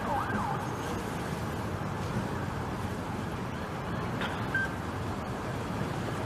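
Steady street background noise, with a distant siren faintly gliding up and down for a moment near the start.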